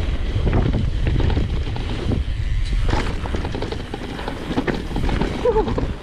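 Mountain bike rolling fast down a dirt forest trail, heard from a camera on the rider: wind buffeting the microphone as a deep rumble, with tyre noise and short knocks and rattles from the bike over bumps.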